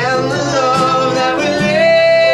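A woman singing long held notes that slide from one pitch to the next, over a strummed acoustic guitar, in a live acoustic band performance.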